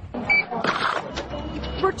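Store checkout register: a short electronic beep about a third of a second in, then about half a second of register noise, with faint beeps later and voices in the background.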